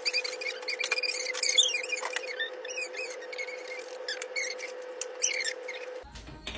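Rapid high-pitched squeaky chirps over a steady hum. The bass is cut away sharply, as in an added sound clip rather than the room's own sound.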